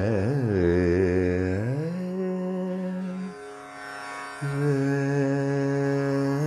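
Male voice singing a wordless Carnatic alapana in raga Saveri: gliding, ornamented phrases that settle onto a held note, a short break about three seconds in, then another long held note. The strings of a plucked lap zither ring softly beneath.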